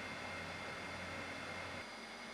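Steady low-level hiss with a faint low hum that drops out near the end.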